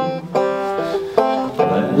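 Open-back banjo strummed in a folk-song accompaniment, a few chords that start sharply and ring on, struck again about a third of a second in, just after one second and at about one and a half seconds.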